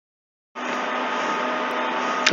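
Dead silence for about half a second, then a steady hiss with a faint hum starts abruptly and holds: the background noise of the narration's recording.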